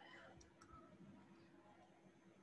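Near silence: faint room tone with a few soft clicks from writing on a computer whiteboard.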